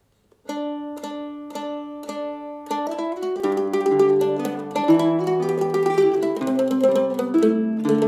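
Mid-Missouri M-0W mandolin opening a slow Irish waltz with plucked notes repeated on one pitch about twice a second, then moving into the melody. About three and a half seconds in, a tenor guitar joins underneath with lower held chords.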